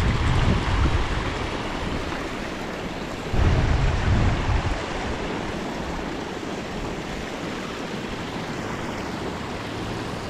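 Creek water rushing steadily over a low rock ledge, with gusts of wind buffeting the microphone at the start and again about three and a half seconds in.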